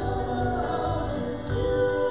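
Church praise team of a man and two women singing a worship song together into microphones, over instrumental accompaniment, several voices held at once.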